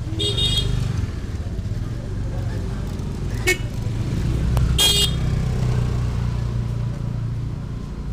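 Busy street ambience: a motor vehicle's engine running close by with a steady low rumble, and a vehicle horn honking near the start and again about five seconds in, with a shorter toot in between.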